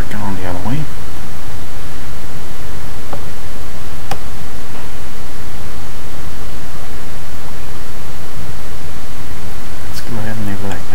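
Loud, steady hiss of recording noise, with a few faint clicks in the middle.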